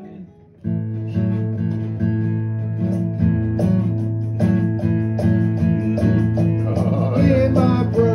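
Acoustic guitar strumming chords in a steady rhythm as a song starts up, beginning abruptly under a second in.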